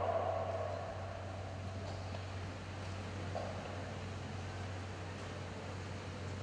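Quiet indoor ice-rink hall ambience with a steady low hum, as music fades out in the first second.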